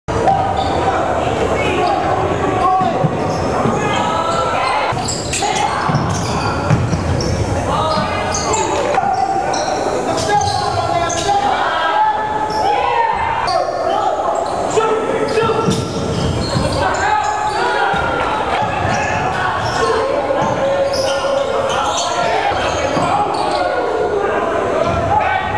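Basketball game sound in a gym: a ball bouncing on the hardwood court amid the voices of players and spectators, echoing in the large hall.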